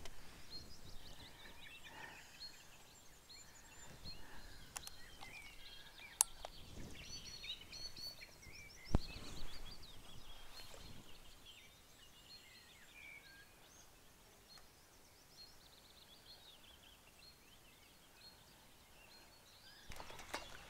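Songbirds singing and chirping over a quiet background, busiest in the first half, with a few sharp clicks, the loudest about nine seconds in.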